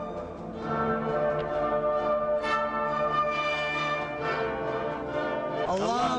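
Orchestral music with brass, a national anthem played over the arena speakers before kickoff. Just before the end, the crowd begins to cheer and shout.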